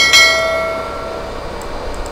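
A single bright bell ding, the notification-bell sound effect of an on-screen subscribe animation. It strikes just after the start and rings out, fading over about a second.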